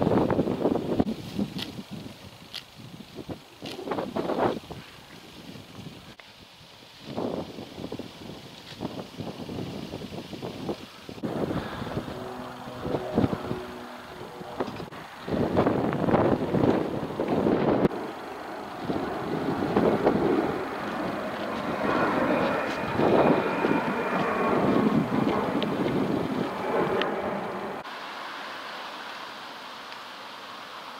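Gusty wind on the microphone outdoors, with a car going by on the road. The noise rises and falls, loudest through the second half.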